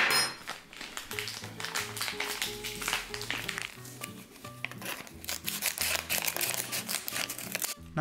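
Plastic powder-mix packet crinkling over and over as it is handled and cut open with scissors, over background music.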